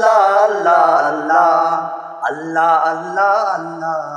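Male voices singing a slow, wavering devotional chant from a Bengali Islamic prayer song (gojol), over a low held drone.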